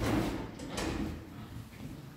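Two dull knocks, the second just under a second after the first, each fading quickly, with rustling in between.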